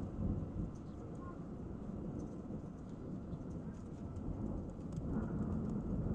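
Thunder rumbling low during a thunderstorm, swelling just after the start and again near the end, with a faint patter of rain.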